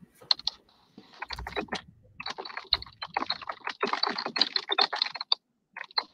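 Typing on a computer keyboard: a fast run of key clicks that builds up after about a second, is densest in the middle and stops a little after five seconds, with a few more keystrokes near the end.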